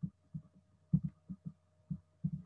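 Soft, low thumps, about eight in two seconds at uneven spacing, from pen strokes being written on a laptop, over a faint steady hum.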